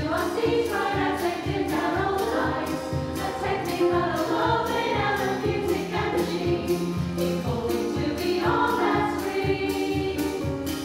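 Mixed choir of men and women singing an upbeat song in harmony, accompanied by keyboard and a drum kit whose cymbal ticks keep a steady beat of about four a second.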